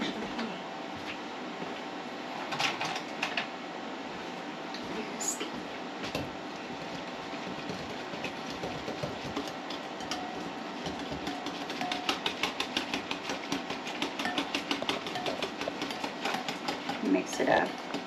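Wire whisk beating a liquid mixture in a ceramic bowl, quick regular clinks and swishes that start out scattered and become steady and louder over the second half.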